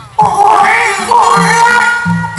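A woman singing a Thai likay song into a microphone through a PA, her voice wavering up and down in long ornamented notes, over a band's repeated bass notes.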